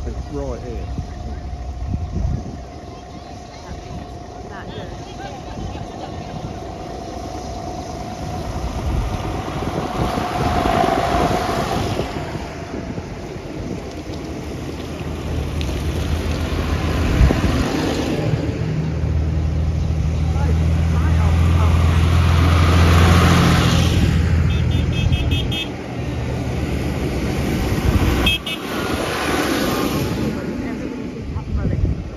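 A John Deere tractor's diesel engine approaching and driving close past, its deep steady engine note loudest about two-thirds of the way through before it falls away, with people chatting.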